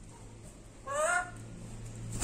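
A pet lory gives one short squawk with a rising pitch, about a second in.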